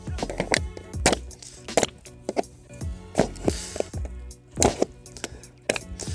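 Background music with a string of sharp, irregular knocks as a pointed tool is jabbed into a plastic milk jug to punch holes in it.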